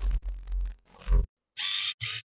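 Glitchy sound effects for an animated channel logo: three abrupt, bass-heavy bursts in quick succession, then a short hissing burst near the end.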